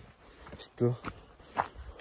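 A hiker's footsteps while walking on a trail, two steps about a second apart, with a short spoken phrase between them.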